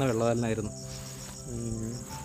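Crickets chirping in a steady high, fast, even pulse, under soft sustained piano notes.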